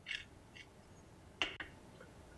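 Hand salt grinder being twisted: a few short, faint grinding crunches, with a brief louder one about one and a half seconds in.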